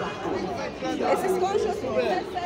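Background chatter: several people talking around the camera, no words clear enough to follow.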